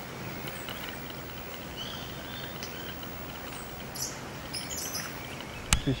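Birds chirping now and then over steady outdoor ambience, with a couple of sharp clicks near the end.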